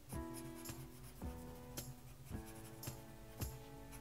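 Light background music, with a black Sharpie marker scratching on paper as it shades in a drawn eye.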